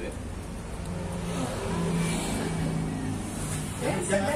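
A motor vehicle driving past, its engine sound swelling to a peak about two seconds in and then fading.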